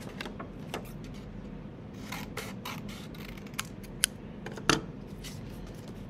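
Scissors cutting through sheets of colored paper: a series of short, irregularly spaced snips, with paper rustling as it is handled.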